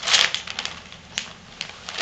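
Wrapping paper on a gift crinkling and rustling as the present is handled. It is loudest in a brief rustle at the start, then goes on as scattered crackles.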